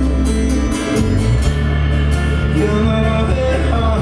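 Live folk-rock band playing on stage: acoustic and electric guitars over a steady drum beat with regular cymbal hits, and singing.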